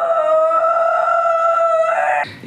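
A single high note sung and held steady for about two seconds.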